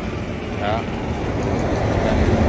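Steady low rumbling background noise, growing slightly louder toward the end, with one short spoken word about half a second in.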